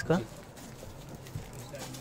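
A short spoken word, then a pause filled with low, steady background street traffic noise.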